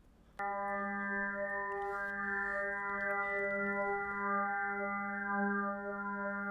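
SuperCollider additive synth: a stack of ten sine-wave partials on a 200 Hz fundamental starts abruptly just under half a second in. Each partial's pitch drifts very slightly and its loudness swells and fades at random, so the steady tone shimmers.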